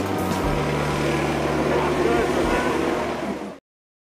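A MARTA city bus running with a steady low engine hum amid outdoor background noise, cut off abruptly about three and a half seconds in.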